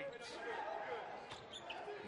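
Basketball game sound in an arena: a ball being dribbled on the hardwood court, with a few sharp knocks, over a murmur of crowd and voices in a large hall.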